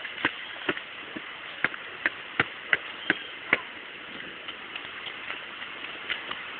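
Footsteps on rock steps: short sharp steps about two to three a second, stopping about three and a half seconds in, after which only a few faint ticks sound over a steady background hiss.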